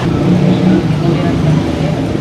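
A young man's voice answering in low tones, with street traffic running behind.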